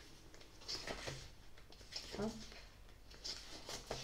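Pages of a small paperback book being leafed through: soft paper rustles and page flips. A woman's voice murmurs briefly and quietly in between.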